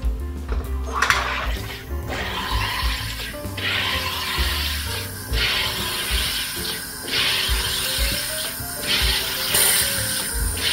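SodaStream home carbonator injecting CO2 into a bottle of water in a series of hissing bursts, each about a second long with short gaps between them, as the water is made extra fizzy.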